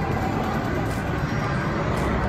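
Steady low rumble of bar-room background noise, with indistinct voices in it.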